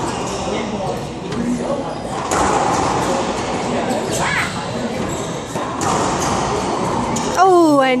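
Racquetball rally in an enclosed court: sharp hits of the ball off racquets and walls, ringing in the hall, with a brief rising squeak about four seconds in, over a steady murmur of voices.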